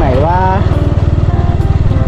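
Small motorcycle engine running steadily while the bike is ridden along a dirt road, a rapid low putter.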